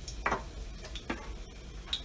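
Three light ticks at the stove, evenly spaced a little under a second apart, with garlic cloves sitting in oil in a stainless steel pan.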